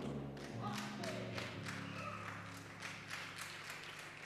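Faint background music from the church band: low held notes that change pitch a couple of times, with faint taps over them.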